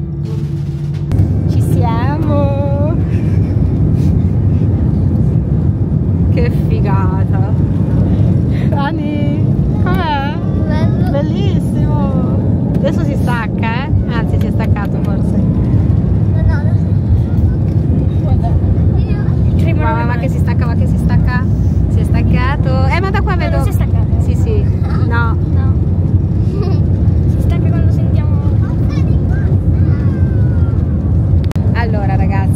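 Airliner jet engines at takeoff power heard inside the cabin during the takeoff roll: a loud, steady low roar that grows louder about a second in, with voices over it.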